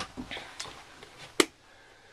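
Faint scattered knocks and clicks from someone moving through a room with bare floors, with one sharp click about a second and a half in.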